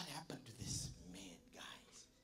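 A man speaking in a hushed whisper into a handheld microphone, in a few short, broken phrases.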